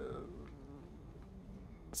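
A pause between a lecturer's phrases: faint room tone, with a brief soft sound at the very start as the last word trails off.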